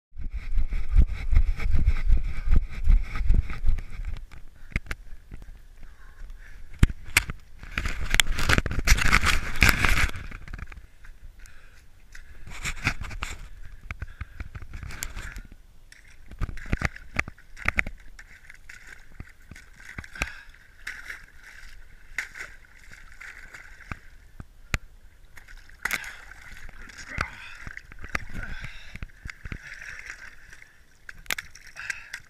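Cold lake water sloshing and splashing around a person wading in, with sharp knocks and rubbing from handling the action camera; the loudest rush is about eight to ten seconds in.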